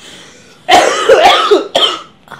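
A hard fit of laughter breaking into a cough: a rough burst of about a second starting partway in, then a short second burst near the end.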